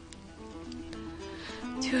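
Quiet background music under a pause in dialogue, with steady held notes.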